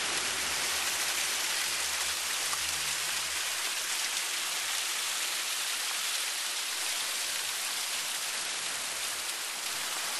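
Water from a boulder landscape waterfall splashing and trickling steadily down the stacked rocks.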